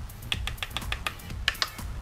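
A quick run of about ten light taps over a second and a half: an eyeshadow brush tapping against the powder palette as shadow is picked up.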